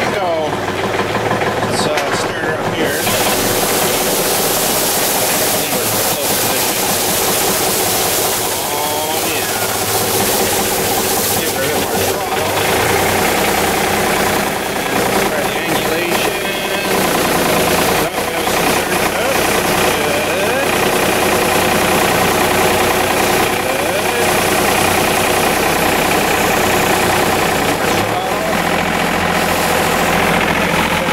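John Deere 2720 compact tractor's three-cylinder diesel engine running steadily under load as it drives its front-mounted rotary broom. About three seconds in, a steady brushing hiss joins the engine note as the spinning broom starts sweeping snow.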